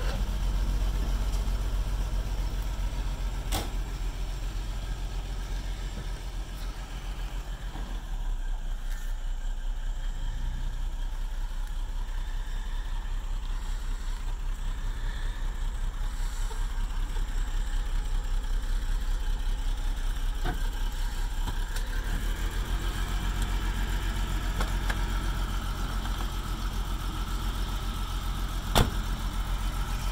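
Jaguar XJS V12 engine running at a low, steady idle, one bank of its cylinders without compression. A single sharp knock sounds near the end.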